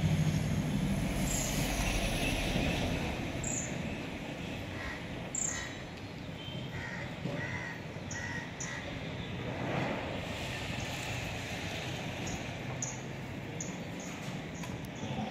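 Birds calling: high, thin chirps that slide downward, repeating every second or two, and a run of short lower calls in the middle.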